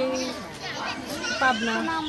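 A woman's voice speaking in short phrases, answering a question.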